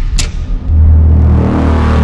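Title-sequence sound effects: a sharp hit just after the start, then a swelling whoosh over a deep bass rumble that cuts off abruptly at the end.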